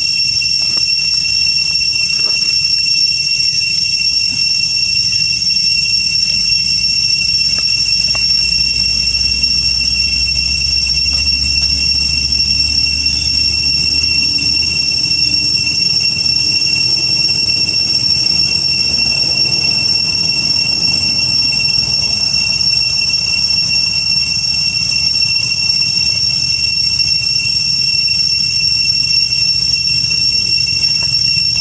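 A steady, unbroken high-pitched insect drone, cicadas, holding one pitch throughout. A low rumble sits beneath it for a few seconds in the first half.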